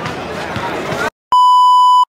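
Outdoor crowd voices cut off abruptly about a second in. After a short dead silence comes a loud, steady, high test-tone beep of the kind played over TV colour bars, used here as an editing transition.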